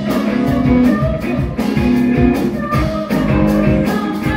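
Live band playing an upbeat song: a drum kit keeps a steady beat under electric guitar and keyboard.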